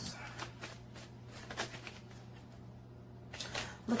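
Tarot cards being shuffled by hand: a quick run of soft card flicks in the first second or so, quieter shuffling after, and a few more flicks near the end as a card is drawn.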